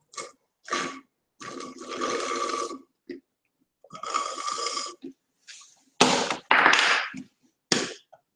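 Sipping a drink through a plastic straw from a large cup: two long sucking, slurping pulls of a second or more each, then loud rough bursts about six seconds in.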